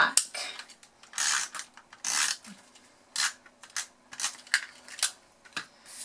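Stampin' Up! Snail adhesive tape runner drawn across cardstock in a few short strokes of about half a second each, followed by lighter clicks and taps of the paper being handled.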